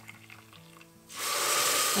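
Water poured from a kettle into a saucepan of lentils, starting about a second in as a loud, steady rushing hiss.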